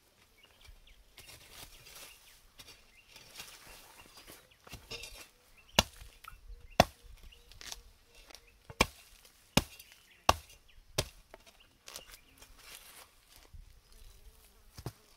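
Hand hoe chopping into soil around cassava roots to dig them out. After a quieter start there is a run of seven sharp strikes, about one a second, the loudest two coming first.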